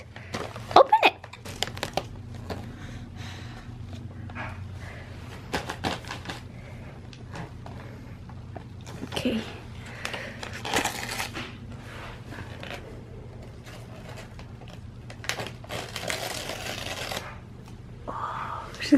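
Gift wrapping paper rustling and crinkling in short bursts as a baby's hands pull at a wrapped present, with two longer tearing rustles, about ten seconds in and near the end. A faint steady hum runs underneath.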